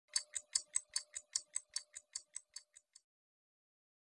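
Rapid ticking, about five evenly spaced ticks a second, growing fainter and stopping about three seconds in, over a faint steady tone.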